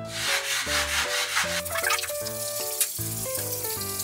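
Diamond abrasive pad scrubbing limescale off a bathroom glass mirror, a continuous gritty rubbing, with background music playing underneath.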